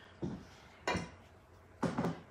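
Three short clatters of kitchen items being handled on the counter, about a second apart, the last the loudest.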